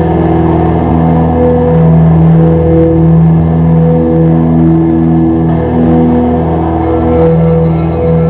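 Slow, droning live music on amplified electric guitars: long sustained notes that shift every second or so over a steady low rumble.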